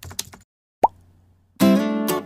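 Animated intro sound effects: a few quick clicks, a short rising pop about a second in, then a plucked guitar chord that rings on near the end.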